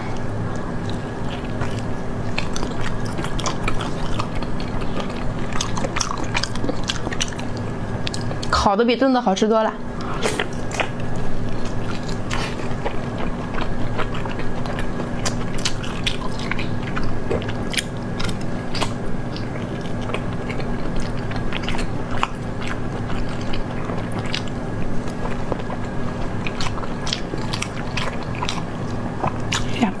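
Close-miked biting and chewing of glazed roasted meat: a steady run of wet, crackly mouth clicks and smacks over a faint steady hum. About nine seconds in there is a short wavering vocal sound.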